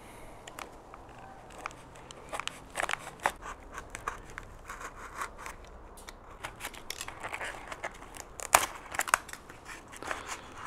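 Utility knife blade cutting into a foam glider fuselage: an irregular run of crackles and sharp clicks as the blade slices and snaps through the foam, loudest near the end.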